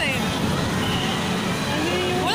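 Steady, loud outdoor background noise, a mix of voices and a traffic-like rumble, with a woman's voice saying 'hi' at the very start.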